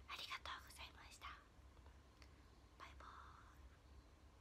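Faint whispering: a few short breathy phrases in the first second or so, then near silence with one more soft whispered sound about three seconds in.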